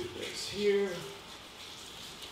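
A man's short held hesitation sound, like "um", about half a second in, then quiet room tone.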